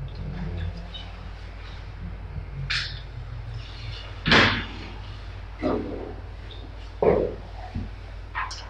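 A few short, separate knocks and bumps of handling at a desk, the loudest about four seconds in, over a steady low hum.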